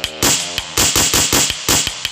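Synthesized MIDI music from a Microsoft Office clip-art MIDI file: a fast, busy drum pattern of about seven hits a second under short pitched synth notes.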